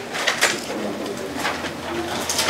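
Thin Bible pages rustling as they are leafed through, with a soft, low cooing or murmuring sound underneath.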